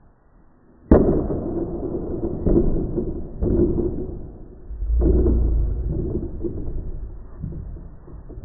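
A sharp crack about a second in, then a long, muffled, boom-like rumble that swells again midway and slowly fades.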